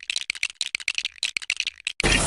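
Rapid, irregular mechanical clattering of about ten sharp clicks a second, from a film sound track over shots of animatronic robots.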